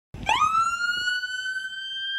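Police car siren wail starting up: the pitch sweeps up quickly, then climbs slowly and holds high.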